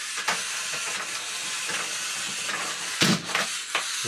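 The battery-powered motor and 3D-printed plastic Nautilus-gear train of a small quadruped walking robot run with a steady whir, with a click just after the start. About three seconds in there is a loud clatter as the robot is lifted off the table.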